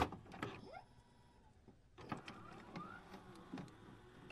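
Faint electronic glitch sound effects: scattered clicks and short whirring pitch glides, dropping to near silence for about a second shortly after the start.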